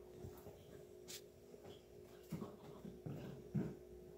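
Airedale terrier puppies playing together, giving a few short, low vocal sounds in the second half, the loudest near the end. A sharp click sounds about a second in.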